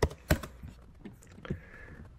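A few separate keystrokes on a computer keyboard, the loudest at the start, then slower taps with pauses between them.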